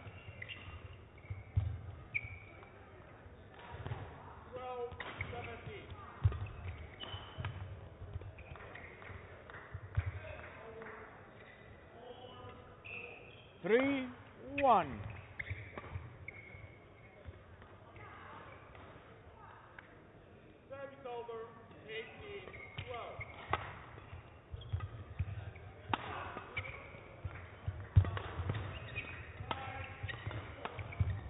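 Badminton being played in an indoor hall: sharp racket strikes on the shuttlecock and short squeaks of shoes on the court mat, scattered through the stretch. The loudest squeaks come about halfway through, and a quick run of strikes comes near the end as a new rally gets going.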